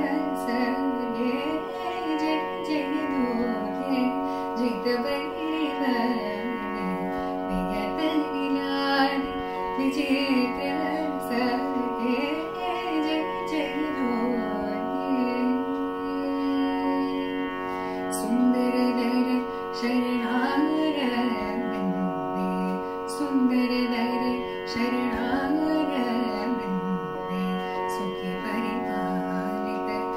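A woman singing a slow Indian classical-style melody, with gliding, ornamented notes, over a steady drone.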